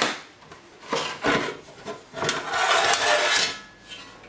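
The outer casing of a Synology DiskStation DS413j NAS being slid off its metal chassis: a sharp click at the start, then rubbing and scraping, the longest stretch from about two to three and a half seconds in.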